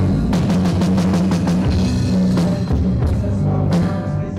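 Rock music played loud, with a drum kit hitting fast and dense over steady low guitar and bass notes.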